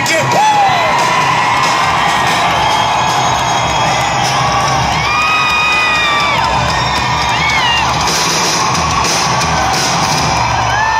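A live band plays loudly through a stage PA while a crowd cheers and whoops, with several held, gliding shouts standing out above the music.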